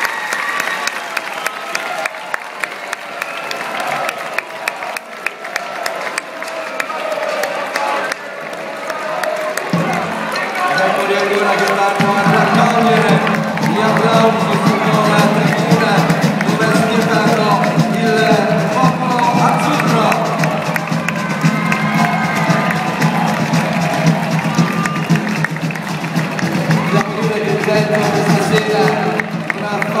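Live music accompanying a flag-throwing display: rapid, dense drumming, joined about ten seconds in by steady sustained low notes that hold to the end, over the chatter and cheering of a large crowd.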